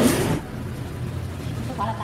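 A voice trailing off, then a low steady hum with no words, and a brief bit of a voice near the end.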